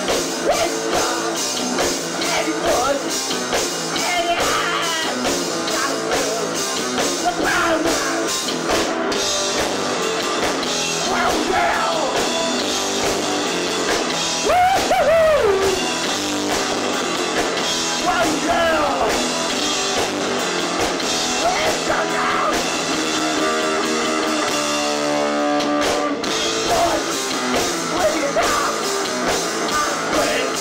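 Garage punk band playing live, with electric guitars and a drum kit, and a singer at the microphone over them.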